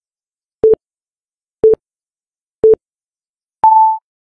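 Electronic countdown timer beeping: three short beeps a second apart, then a longer, higher beep about an octave up marking zero.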